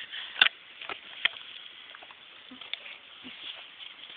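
Fizzy drink foaming in a can with an effervescent lemon vitamin tablet dissolving in it: a faint steady fizzing hiss, with a few sharp clicks, the loudest about half a second in.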